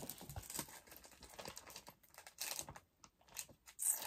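Faint rustling and crinkling of paper and a plastic sleeve being handled, in short scattered bursts, a little louder past the halfway point.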